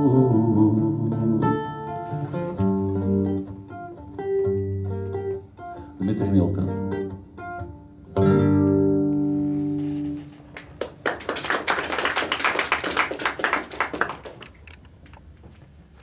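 Two acoustic guitars playing the instrumental close of a song, a few plucked notes and then a final chord about eight seconds in that rings out. This is followed by audience applause lasting about four seconds, which fades near the end.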